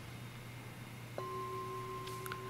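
A struck ritual bell starts ringing a little over a second in, with a clear, steady tone that holds without fading. Under it is a faint low hum.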